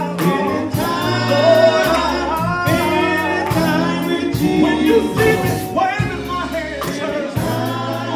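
Live gospel quartet singing: a male lead voice with backing vocals over bass guitar and band accompaniment.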